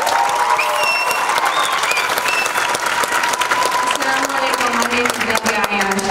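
Audience clapping steadily in a large hall, with a long high-pitched note held over it for the first four seconds or so.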